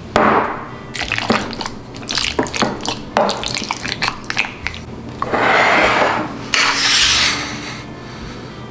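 A wooden spoon stirring marinated chicken pieces in a glass bowl: wet squelching with irregular clicks and scrapes of the spoon against the glass. Two louder hissing rubbing sounds come in the second half.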